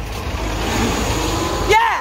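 City transit bus pulling away from the stop close by: a steady rush of engine and road noise with a low rumble, cut into by a woman's loud voice near the end.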